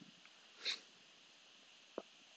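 Near silence, broken by one short sniff from the presenter about a third of the way in and a faint click at the very end.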